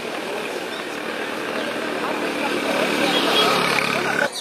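A group of young people talking at once outdoors, their voices overlapping, with a vehicle engine running underneath and growing louder in the second half.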